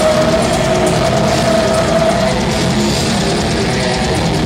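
Live death metal band playing loud: heavy distorted electric guitars over drums, with one long held note ringing through the first two seconds or so.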